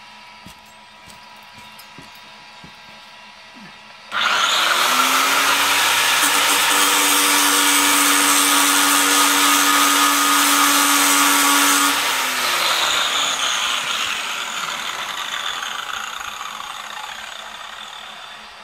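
Angle grinder skimming the face of a brake disc that an electric golf-cart motor is spinning. About four seconds in, the grinder starts with a motor whine that rises to a steady pitch, and a loud, harsh grinding follows for about eight seconds. Then the whine stops and the sound dies away gradually over several seconds.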